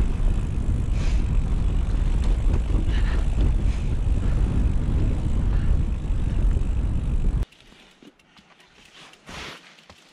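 Wind buffeting a helmet or handlebar action camera's microphone, mixed with the rumble and rattle of mountain bike tyres on a rough dirt trail during a fast descent. It cuts off abruptly about seven and a half seconds in, leaving only faint outdoor sound with a brief knock.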